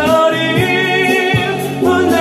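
A man singing a Korean pop ballad into a karaoke microphone over the backing track, with drums beating underneath.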